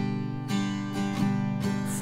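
Acoustic guitar strumming a G major chord in a pop rhythm of down and up strokes, about six strums in two seconds with the chord ringing between them.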